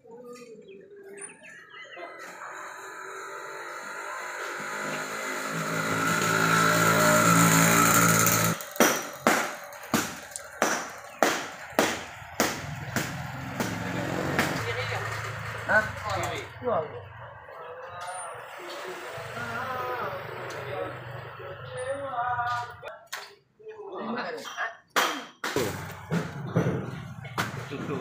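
Busy fish-market sounds with people's voices. A pitched hum builds up over the first eight seconds and cuts off abruptly, followed by a run of sharp knocks about twice a second.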